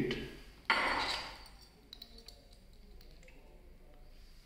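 A sudden short rasping noise just under a second in, the loudest sound here, then a few light glassy clinks as a metal test tube holder is clamped onto a glass test tube.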